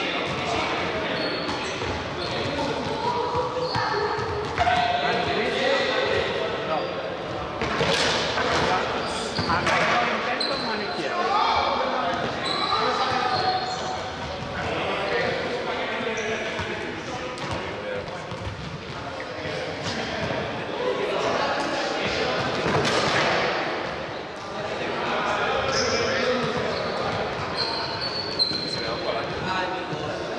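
Chatter of several voices echoing in a large sports hall, with balls bouncing on the hard floor now and then.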